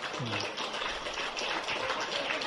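A church congregation applauding, with music playing underneath.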